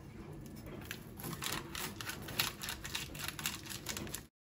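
A kitchen knife cutting through a freshly baked cookie bar on baking parchment: a run of irregular crisp crackles and small taps, busier from about a second in.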